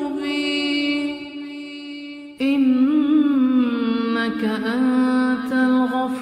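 A man's voice chanting an Arabic supplication in a slow, ornamented melodic style. It holds one long note that fades away, then a new phrase begins abruptly, louder, about two and a half seconds in.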